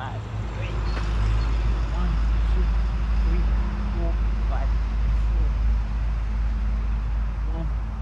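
Low, steady rumble of a vehicle, swelling about half a second in and holding, with faint voices behind it.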